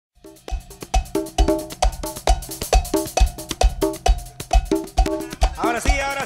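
A tropical cumbia band starts playing after a moment of silence. A steady kick-drum beat, a little over two a second, carries percussion strikes led by a cowbell-like hit and repeated short chords. Near the end a sliding melodic line comes in.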